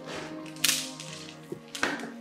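Two sharp swishing hits over sustained background music: the first, and loudest, about half a second in, the second near the end.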